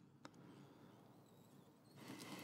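Near silence: faint room tone, with one faint click about a quarter second in.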